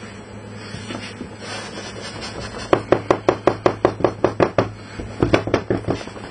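A plastic rearing box full of flake soil and rotten leaves being jolted against the tabletop in quick succession, about seven knocks a second for two seconds, then a second shorter run after a brief pause, shaking the substrate down so it settles through the box. Softer rustling of the loose substrate comes before the knocks.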